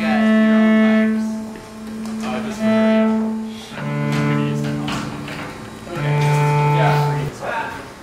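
Cello playing slow, long bowed notes, each held for about a second or more, moving to lower notes about halfway through, with faint voices in the gaps.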